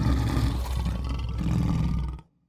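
A loud, rough roar that starts abruptly out of silence and cuts off sharply after about two seconds.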